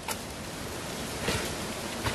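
Steady hiss of outdoor background noise, with a light click just after the start and a soft rustle about a second and a quarter in as items are handled out of a nylon daypack.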